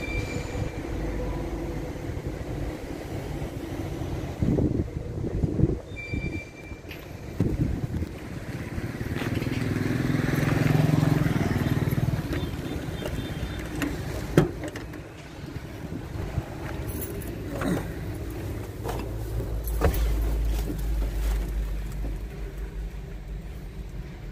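A motor vehicle passing by, its sound swelling and fading over a few seconds near the middle, over steady outdoor noise with a few scattered knocks and clicks.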